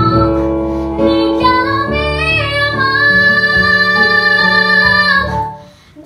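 A teenage girl singing solo over instrumental accompaniment, holding one long, steady note through the middle. The music drops away to a brief pause near the end.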